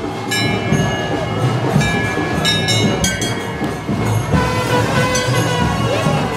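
Brass temple bells being rung again and again: sharp clangs about every two seconds, each leaving long, overlapping ringing tones, over a busy background din.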